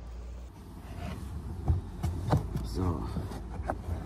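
Faint clicks and rustling as hands work a wiring connector and plastic trim panel in a car's boot, with a short spoken "So" near the end.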